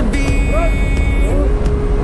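Steady engine and propeller drone heard inside the cabin of a light aircraft climbing with skydivers aboard.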